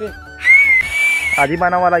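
A single high whistle about a second long, rising slightly at the start and then held steady, over background music.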